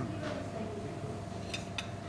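Two light clinks about a second and a half in, a spoon set down against a plate, over a steady hum of room tone.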